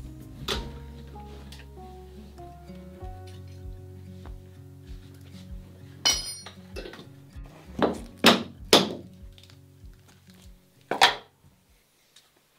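Background music with a steady beat, broken by several loud wooden thunks as backing blocks are knocked loose from a wooden boat hull. There is a ringing clink about six seconds in, and the loudest knocks come as a quick pair about eight seconds in and again near the end.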